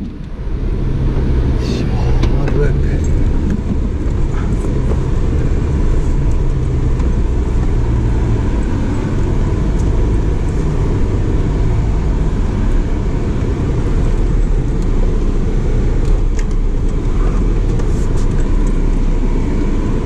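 A 4x4 driving on a dirt track: a steady rumble of engine and tyres from the moving vehicle, with a few faint rattles.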